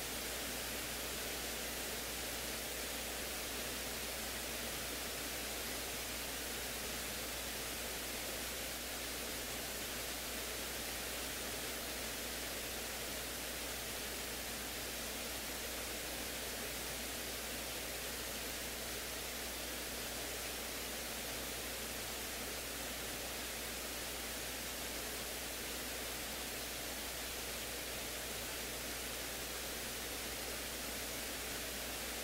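Steady static hiss from the recording's audio line, unchanging throughout, with no voices or other sounds standing out above it.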